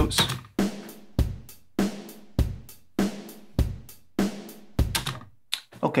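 A sampled MIDI drum kit plays a plain 4/4 beat, which the speaker calls really boring: a hi-hat on every eighth note, with kick and snare on the beats. The hits come evenly about every 0.6 seconds, and playback stops shortly before the end.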